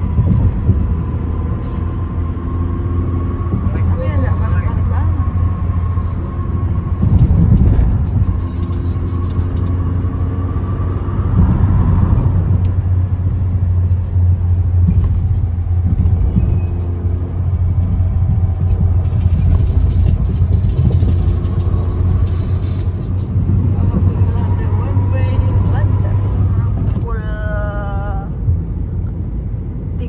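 Steady low rumble of a car's engine and tyres heard from inside the cabin while driving on a highway.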